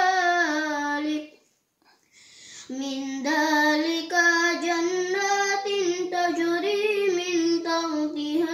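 A boy chanting Quranic recitation (tartil) in Arabic, in a high melodic voice with long held notes. He stops for a breath about a second in and resumes about a second and a half later.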